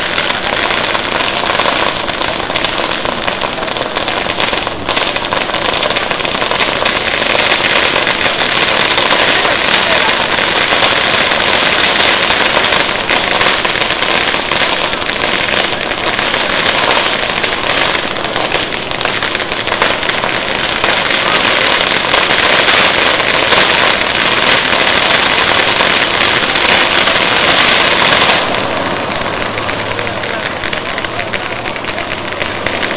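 Ground fireworks going off without a break: fountain cones and firecrackers making a dense, continuous crackle, easing off near the end.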